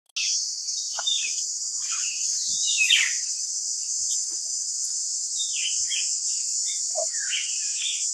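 Forest ambience: a steady high-pitched insect drone with scattered bird chirps and calls over it.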